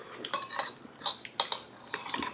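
Metal spoon and fork clinking against ceramic bowls and a plate while eating: four or five short clinks, each with a brief ring, the sharpest about one and a half seconds in.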